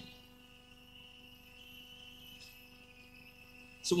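Near silence in a pause of speech: a faint steady hum with a thin, high-pitched steady tone above it.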